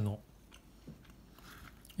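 A person chewing a mouthful of food quietly, with a few faint soft clicks.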